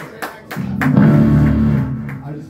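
Amplified electric stringed instrument: a few light clicks, then a low chord struck about half a second in that rings loudly for over a second and fades near the end, played between songs.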